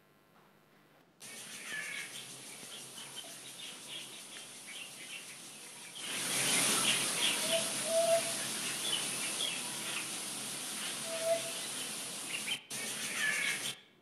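Birds chirping over a steady outdoor hiss. The sound starts about a second in, grows louder about six seconds in, and breaks off briefly near the end.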